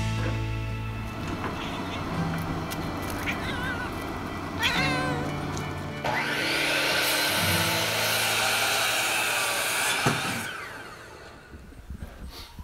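A sliding compound miter saw cuts a pine board starting about halfway through, then its blade winds down and fades out near the end. Before the cut there is background music, and two short wavering animal cries come a couple of seconds apart.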